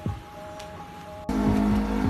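Quiet background music, then about a second in a sudden cut to a loud, steady low rumble like a car's cabin on the move, with music carrying on over it.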